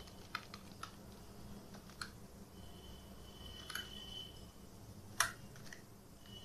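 Faint computer keyboard keystrokes, a few scattered clicks with pauses between them, the sharpest one about five seconds in.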